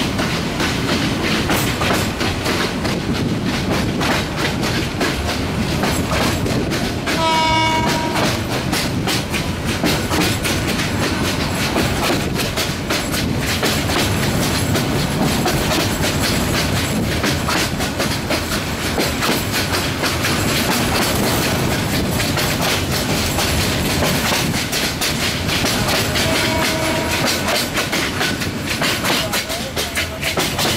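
Meter-gauge passenger train running, heard from an open coach window: a steady rumble with wheels clattering over rail joints. The locomotive horn gives a short blast about seven seconds in and a fainter one near the end.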